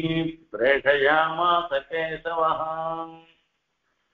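A man chanting a verse in a drawn-out, sing-song recitation with long held notes, breaking off about three and a half seconds in.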